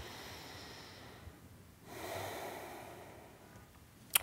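A man breathing close to a lapel microphone: two long, soft breaths, the first thinner and higher, the second lower and a little louder.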